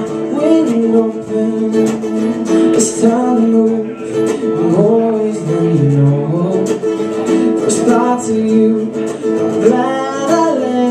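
Solo male singer accompanying himself on strummed acoustic guitar, his voice sliding up and down in a wordless run over the chords.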